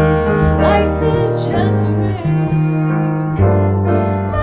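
Live small-group jazz: piano chords over an upright double bass stepping through the changes of a slow bossa nova, with a wavering melody line above them in the first second or so.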